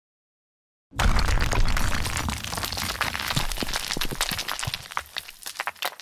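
Logo-sting sound effect: a sudden deep rumble with dense crackling that begins about a second in and fades away over about five seconds.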